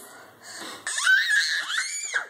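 A toddler crying: a wheezy catch of breath, then from about a second in a loud, high-pitched wail that rises and falls in pitch.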